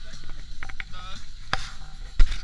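Low steady hum inside a moving car, broken by a series of sharp clicks and knocks, with a short squeak about a second in and a louder knock near the end.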